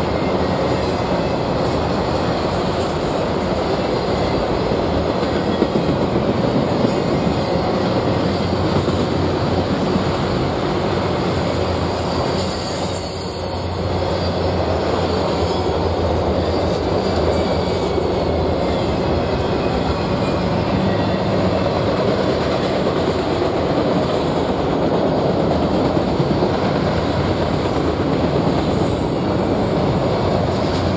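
Freight train of multilevel autorack cars rolling past: a steady rumble and rattle of the car bodies and steel wheels on the rails, dipping briefly about halfway through.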